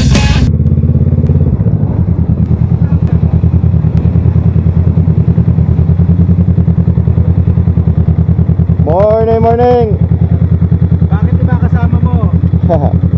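Honda Rebel 500 motorcycle engine running at low speed and idle, a steady fast pulsing beat, as the bike rolls slowly and comes to a stop. A person's voice calls out briefly about three-quarters of the way through.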